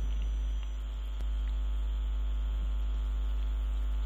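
Steady low electrical mains hum with a faint buzz above it, carried on the recording, with a single faint click about a second in.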